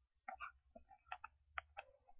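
Near silence with a low hum and about half a dozen faint, irregular clicks spread through the two seconds.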